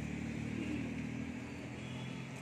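A motor vehicle's engine running close by, a steady low hum over general street noise.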